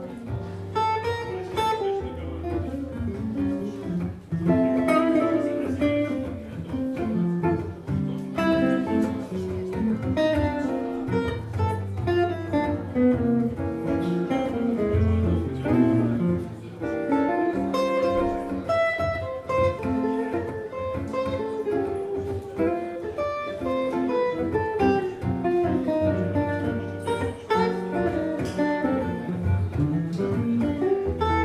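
Two amplified guitars playing together live, an archtop hollow-body and an electric, with quick single-note runs over chords and no pauses.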